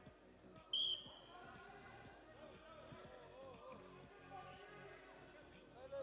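Referee's whistle blown once, a short shrill blast about a second in, starting the wrestling bout. Voices murmur in the hall around it.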